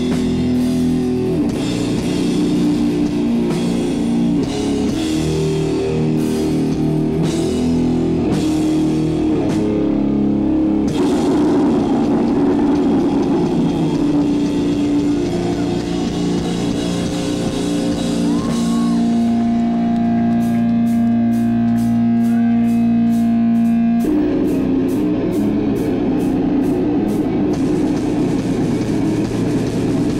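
Death/doom metal band playing live: heavily distorted guitars and bass with drums. About nineteen seconds in, a chord is left ringing over steady cymbal ticks, about three a second, then the full band comes back in about five seconds later.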